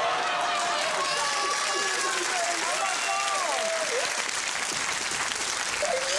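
Studio audience applauding and cheering, with excited whoops and shouts rising and falling over the clapping in the first few seconds.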